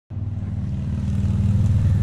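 A loud, steady low rumble with no rise or fall.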